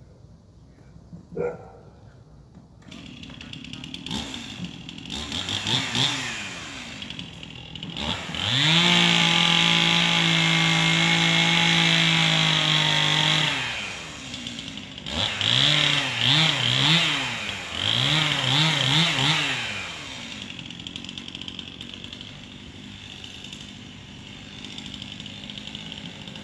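Two-stroke chainsaw started and run up: a few revs, then held at full throttle for about five seconds, dropped to idle, blipped several times, and left idling near the end.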